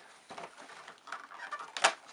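Fingers scratching at and pushing open the perforated cardboard door of an advent calendar box: a run of small scratchy clicks and rustles, with one sharper snap near the end.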